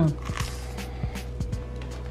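Soft background music holding sustained low notes, with a few faint soft clicks of chewing as a bite of a bread-roll sandwich is eaten.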